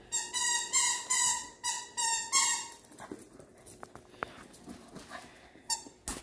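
A small shaggy dog whining: a run of about five short, high-pitched whines in the first three seconds, then one brief whine near the end.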